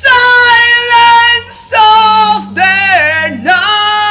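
A solo singing voice holding long, high notes in several phrases, with short breaths between them and the pitch sliding down at the ends of phrases, over faint backing music.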